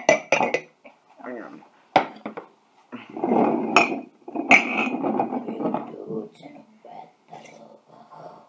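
Ceramic mugs knocked together and slid around on a wooden tabletop as they are shuffled. There are several sharp clinks, with a rough scraping stretch about three to six seconds in.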